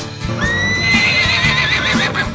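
A horse whinnying once: a high call that starts about half a second in, rises a little, then quavers for about a second. Music with a steady beat plays underneath.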